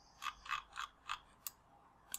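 A computer mouse clicking faintly: five quick clicks in the first second and a half.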